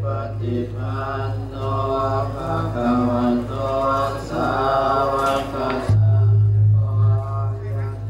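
Buddhist chanting with music, carried over a loudspeaker system, with a low steady hum underneath that breaks off briefly about six seconds in.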